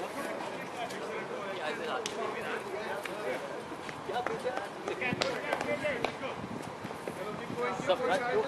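Several distant voices of players calling and chatting across an open cricket field, with a few sharp knocks, one about two seconds in and a pair about five seconds in.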